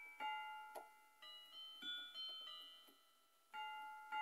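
Piano playing a slow, sparse melody, each struck note ringing and fading, with a short lull before a chord sounds near the end.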